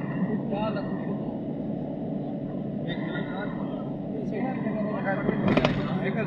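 Steady drone of a car moving at motorway speed, heard from inside the cabin, with voices talking over it. A short sharp knock comes about five and a half seconds in.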